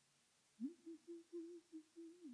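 A person humming a few short notes quietly, starting about half a second in: one pitch that slides up, holds with small breaks and dips once near the end.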